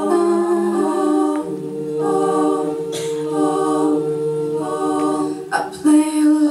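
All-female a cappella group singing held chords in harmony through microphones and a PA, the chord changing about a second and a half in and one upper line sustained for about three seconds. A few short sharp clicks cut through, once mid-way and again near the end, after a brief drop in level.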